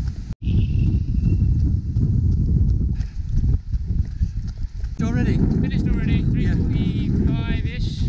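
Headwind buffeting the microphone of a camera carried by a runner, a heavy low noise, with footfalls on the promenade paving.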